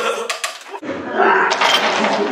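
Several young men's voices laughing and calling out together. About a second in the sound changes abruptly and loses its top end, as at an edit.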